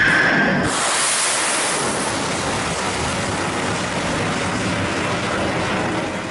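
Missile launch from a warship's deck: loud, steady rushing noise of the rocket exhaust, turning to a brighter hiss about a second in.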